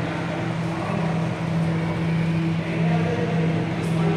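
A steady low hum over a constant noisy background.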